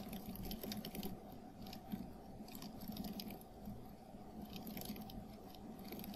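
Faint, quick, irregular keyboard typing clicks, sped up about three and a half times in playback, over a low steady hiss.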